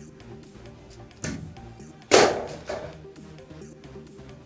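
A wooden board dropped down a brick water-tower shaft. A knock comes about a second in, then a loud crash as it lands just after two seconds, echoing in the shaft, over background music.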